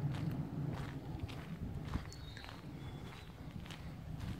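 Footsteps of a person walking along a dirt forest trail, about two steps a second.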